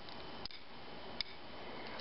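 Low room hiss with three small clicks about three-quarters of a second apart, the middle one the clearest: handling noise from a hand moving a plastic doll close to the microphone.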